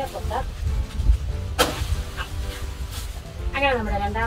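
A machete chopping into the stalk of a banana bunch: one sharp stroke about one and a half seconds in, and a lighter one about a second later.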